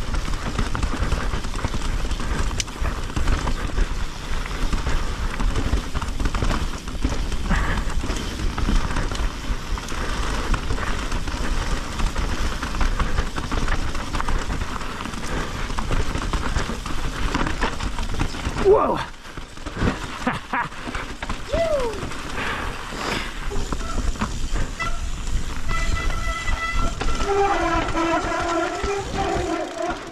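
Mountain bike descending rocky singletrack: wind buffeting the camera mic and the tyres and bike rattling over rock. Near the end the disc brakes squeal in a steady multi-tone howl, typical of brakes that have cooled off.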